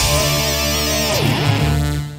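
Live heavy metal band with distorted electric guitar and bass holding the closing chord of a song, one note dipping in pitch and coming back partway through. It cuts off at the end and rings away.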